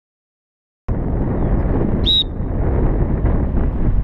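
Wind buffeting an outdoor camera microphone, starting after about a second of silence. About two seconds in comes one brief, high-pitched whistle blast.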